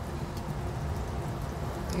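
Butter and pan juices sizzling steadily in a hot sauté pan around seared sockeye salmon, a fine crackling hiss.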